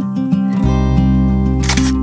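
Background music with acoustic guitar strumming over a bass line that comes in partway through. Near the end, a short camera-shutter sound effect clicks over the music.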